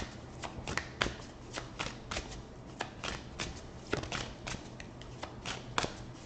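A deck of tarot cards being shuffled by hand, with short crisp card slaps coming about three to four times a second.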